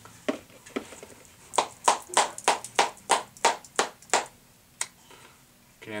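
A can of Copenhagen Straight Cut dip being packed: it is tapped sharply in the hand about a dozen times, roughly three taps a second, to pack the tobacco down.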